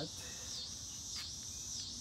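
Insects buzzing: a steady high-pitched drone that dips and swells about twice a second.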